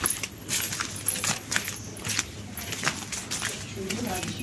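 Footsteps along a dirt path, heard as irregular light clicks and small scuffs, several a second.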